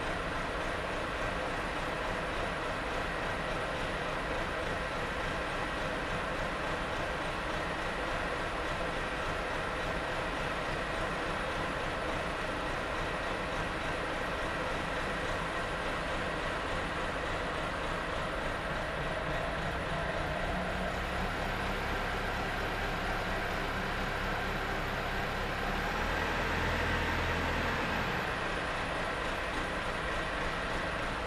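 Backhoe loader's engine running steadily while its hydraulics work the front loader arm. The sound swells and gets deeper toward the end as the loader bucket is raised.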